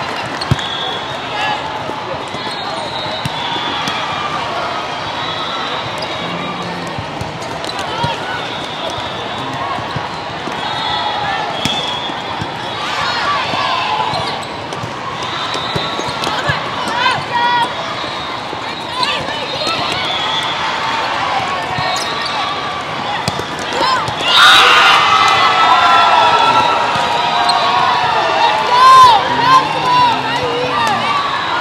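Indoor volleyball play in a large echoing hall: sharp ball contacts and sneakers squeaking on the court over a constant wash of voices from players and spectators, getting louder late on.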